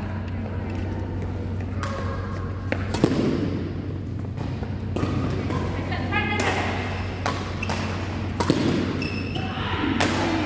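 Badminton rally: about five sharp racket strikes on the shuttlecock, a second or two apart, with short squeaks of shoes on the court and voices in the hall over a steady low hum.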